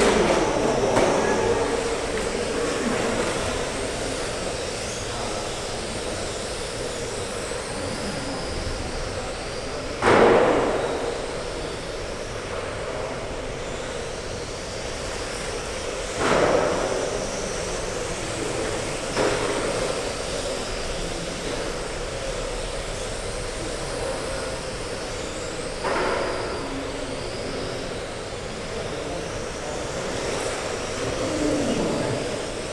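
Several 1/12-scale electric GT12 RC cars racing on a carpet track, their motors making a steady, wavering high whine. Three times (about a third of the way in, just past halfway, and near the end) a car swooshes loudly past close to the microphone, and the sound echoes around the hall.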